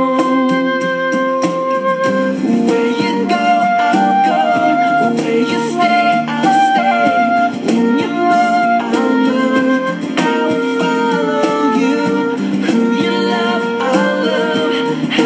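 Concert flute playing a flowing melody of held and moving notes over instrumental accompaniment.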